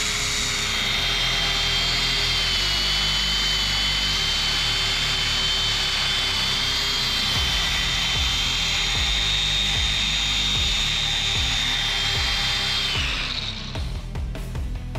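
DeWalt 20V brushless cordless angle grinder driving a belt sander attachment, its abrasive belt sanding a metal pipe clamped in a vise: a steady high motor whine with the rasp of the belt on metal. The grinder stops near the end.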